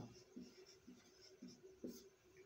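Marker pen writing on a whiteboard: a handful of faint, short strokes.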